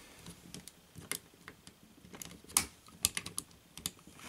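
Faint, irregular clicks and light taps of a screwdriver tip and hard plastic toy parts as the tip probes and pries at a red plastic panel that is popped onto the leg with small pegs. The loudest click comes about two and a half seconds in.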